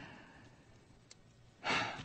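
A man's exasperated sigh, a breathy exhale that fades away, then a breath drawn in near the end before he speaks again.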